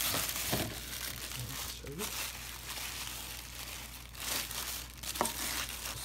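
Tissue paper crinkling and rustling as a hand digs into a small cardboard gift box to unwrap an ornament, in uneven flurries with a sharp click about five seconds in.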